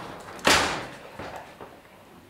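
A sliding wardrobe door pushed shut, hitting its stop with one sharp bang about half a second in, then fading away.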